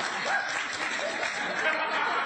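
A studio audience applauding, with a few voices over the clapping.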